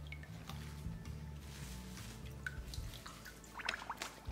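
Faint background music with a steady bass line. Over it come small splashes and drips of water as a tied white T-shirt is pushed down into a plastic bowl of cold water to soak, with a few splashes close together near the end.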